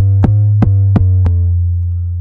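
An 808 bass playing back from an Akai MPC One: a long, loud low bass note held under sharp percussion hits about three a second. The hits stop a little past a second in and the 808 note is left to fade.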